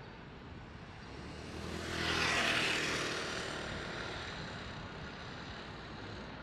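City street traffic: a vehicle passing through the intersection, its noise swelling to a peak about two seconds in and then slowly fading.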